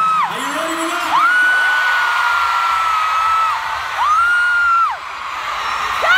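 A fan screaming close to the phone over a cheering arena crowd: one long high-pitched scream held for about two and a half seconds, then a shorter one near the end.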